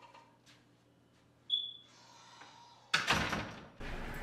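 Faint door sounds with a few light clicks, then a single short high-pitched electronic beep about a second and a half in. About three seconds in, a sudden, much louder stretch of rustling and handling noise starts, with another sharp knock near the end.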